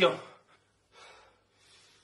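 A man's spoken line trails off at the start, then a short, faint breath without voice about a second in.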